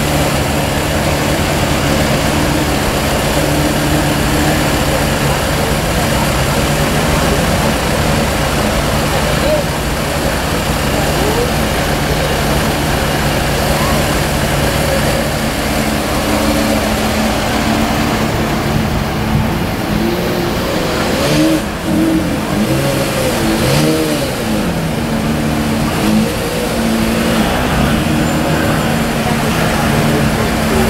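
Porsche Carrera GT's V10 engine idling steadily.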